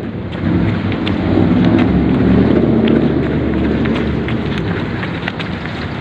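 Wind and handling noise on a phone microphone carried by a jogger: a loud, steady rumble with a few faint knocks.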